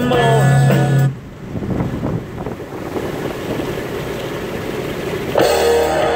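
A song with a singing voice ends about a second in, leaving steady road noise inside a moving car for about four seconds. Guitar music starts near the end.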